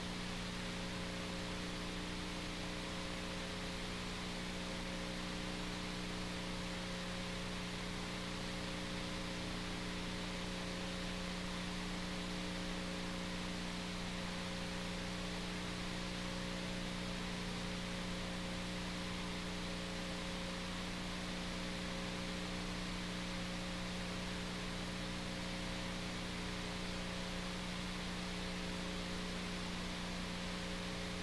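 Steady hiss with a constant electrical hum, unchanging throughout with no other sound: the noise floor of a poor-quality videotape recording.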